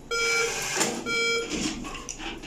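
An ATM beeping twice as it presents dispensed banknotes at the cash slot, with each beep about half a second long. Banknotes rustle as they are handled near the end.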